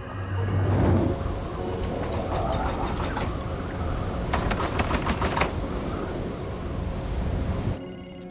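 Snowstorm wind blowing steadily as a loud rush of noise, with soft music underneath. A quick run of rattling clicks comes about halfway through.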